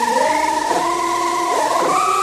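Orchestral film score: long held notes that slide smoothly from one pitch to another, several lines moving together.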